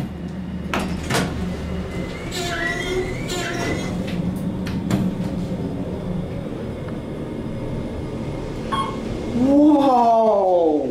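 Otis traction elevator: the car doors slide shut after a couple of clicks, and the car then runs down with a steady low hum. Two short pitched sounds come a few seconds in.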